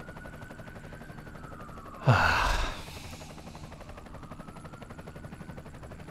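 Police siren wailing slowly up and down in the distance, with a man's sharp gasp about two seconds in.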